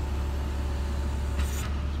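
Diesel lorry engine idling, a steady low drone, with a brief hiss about one and a half seconds in.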